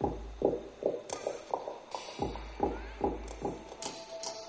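Electronic music track for a stage dance routine: a run of sharp synth hits, each dropping quickly in pitch, coming a few times a second.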